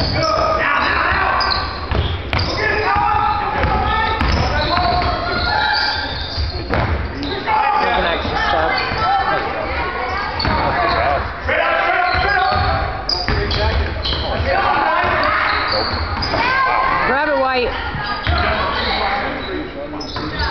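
Basketball game in a gymnasium: the ball bouncing on the hardwood court, with voices from the crowd and players echoing around the hall throughout.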